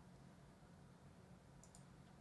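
Near silence: quiet room tone, with a couple of faint computer clicks near the end.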